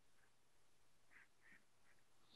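Near silence on a video-call recording, with a couple of very faint, brief blips a little over a second in.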